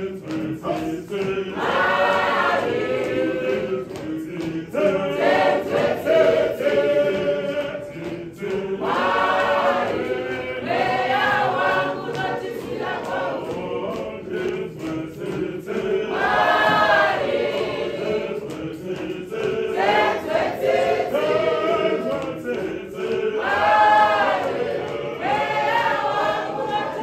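A church choir singing a processional hymn, a loud phrase swelling and returning about every seven seconds.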